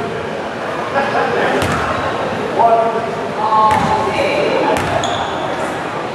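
A basketball bouncing a few times on a hardwood gym floor as a free-throw shooter dribbles before his shot, each bounce a sharp knock with the echo of a large hall, over chatter from voices in the gym.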